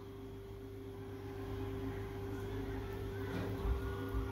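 A steady low background hum, like a running appliance, with faint soft handling sounds near the end.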